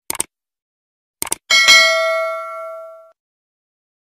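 Subscribe-button animation sound effect: a mouse click, a quick double click about a second later, then a bright bell ding that rings out and fades over about a second and a half.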